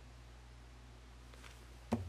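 Quiet room tone, a faint tick, then near the end a short knock as a small workpiece is set down on the tabletop at a toggle clamp.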